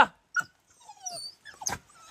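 A dog giving a short, faint falling whine about a second in, with a few sharp knocks around it.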